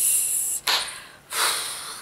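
A woman breathing audibly through a pause in her speech: a breath out and a breath in, with no voice, the kind of breathing that comes when someone is overcome with emotion.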